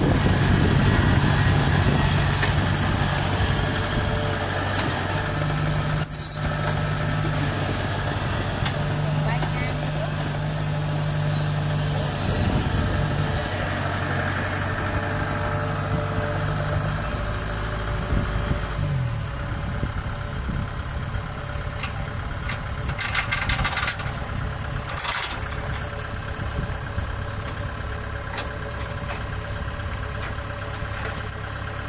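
Kubota tracked combine harvester's diesel engine running steadily, then slowing about two-thirds of the way in and carrying on at a lower idle. A single sharp knock about six seconds in, and short rattling clicks a little later.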